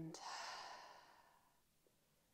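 A woman's deep exhale through the open mouth: one long, breathy out-breath that fades away over about a second and a half.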